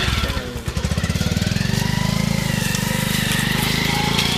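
Motorcycle engine running steadily as the bike pulls away, with an even, rapid firing pulse.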